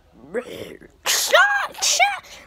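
A child's high-pitched wordless vocal sounds: a short rising cry, then breathy, arching squeals in the second half.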